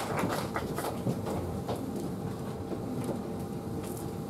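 Audience applause tailing off into a few scattered hand claps over a low, steady background din of the room.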